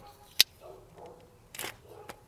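A single sharp click about half a second in, then soft rustling and a brief crinkle as a small plastic decal packet is handled.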